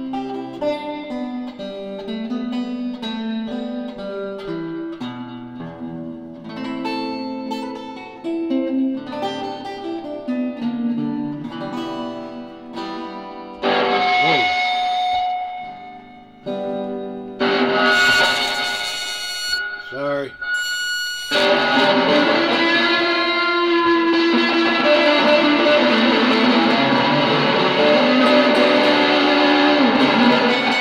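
Old Kay electric guitar, thought to date from the 1960s, being played: single notes picked one after another for the first half, with a couple of notes gliding down in pitch around the middle. About two-thirds of the way in it turns to louder, steady strummed chords.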